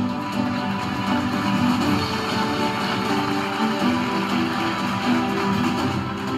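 Instrumental intro music with guitar, held chords at a steady level.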